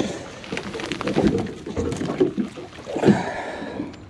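A freshly caught barracouta flapping in a fibreglass boat hatch and being grabbed with a cloth towel: irregular knocks and cloth rustling.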